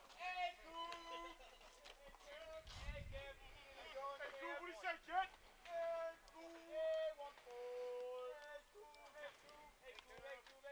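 Faint, distant voices, some with notes held at a steady pitch like singing, and a soft low thump about three seconds in.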